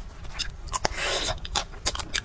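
Mouth sounds of chewing a chocolate-coated ice cream bar: a few sharp clicks and crackles, with a short crunch about a second in.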